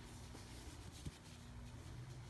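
Faint rubbing of hands working the tail of chunky chenille loop yarn back through a loop, over a low steady hum, with one small click about a second in.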